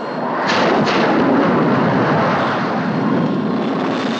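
Jet fighter's engine noise as it dives on an attack run, with two sharp rushing bursts about half a second apart near the start: two rockets being fired. A steady rushing noise follows.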